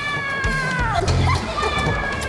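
Two high, drawn-out cries, each about a second long and falling in pitch at the end, over background music with a steady beat.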